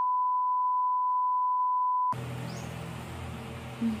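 Bars-and-tone test signal: a steady single-pitch beep that cuts off abruptly about two seconds in, followed by the low background hum of the room.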